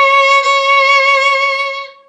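Violin playing C sharp with the second finger on the A string, one steady bowed note with a bow change about half a second in. The note fades out near the end.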